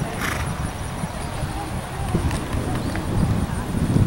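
Hoofbeats of a thoroughbred horse cantering on sand arena footing, approaching and taking a show jump, with faint voices in the background.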